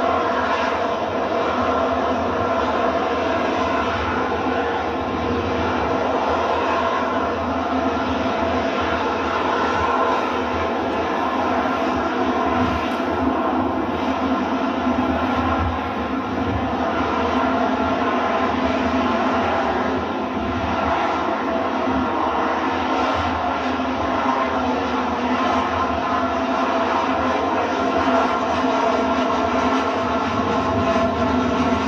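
Harrier jump jet's Rolls-Royce Pegasus engine running at high thrust while the jet hovers: a steady, loud jet noise that holds at an even level throughout.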